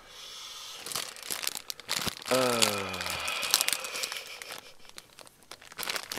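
Plastic packaging and bubble wrap crinkling and rustling as it is handled and pulled open. About two seconds in, a short voice sound slides down in pitch.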